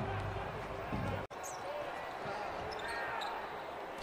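Basketball court sound: a ball bouncing on the hardwood floor with faint court noise. It breaks off sharply about a second in and then carries on quieter.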